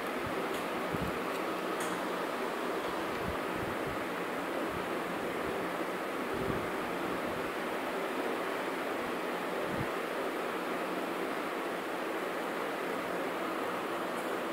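Steady background hiss, with a few faint soft knocks scattered through it.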